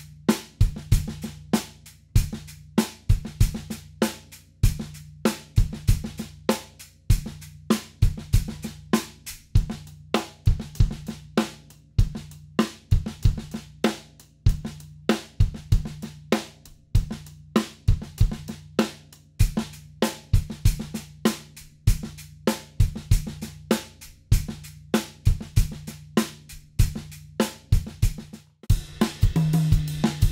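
A steady drum-kit groove of sixteenth-note hi-hat, snare backbeat and bass drum on a Tama Starclassic kit with a copper snare and Meinl Byzance hi-hats. The groove is played as a loop, switching between its cross-handed and open-handed versions. The playing breaks off briefly near the end, then starts again.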